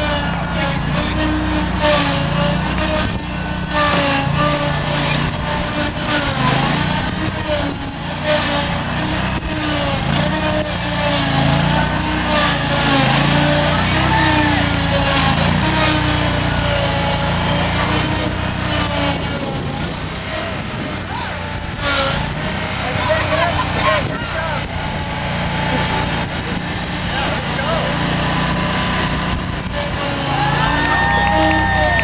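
Riding lawnmower engine running continuously, its pitch wavering as the mower is driven, with indistinct voices of onlookers over it.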